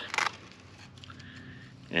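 A short intake of breath at the start, then low, steady background noise.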